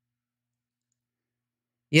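Complete silence, with no room sound at all, until a man's voice starts abruptly right at the very end.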